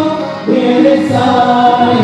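Several voices singing a devotional song together in held notes, with harmonium and violin accompaniment; the music dips briefly about half a second in, then the voices come back in on a new phrase.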